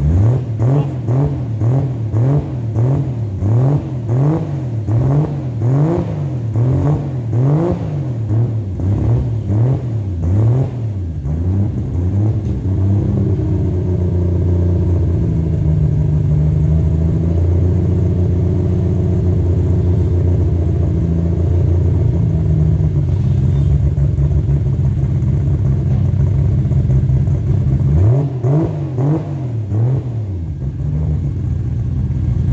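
2JZ straight-six in a Mitsubishi Starion, exhausting through a 4-inch Vibrant Performance muffler. It is blipped in quick repeated revs, a little more than one a second, for about ten seconds, then settles to a steady idle. A few more quick revs come near the end.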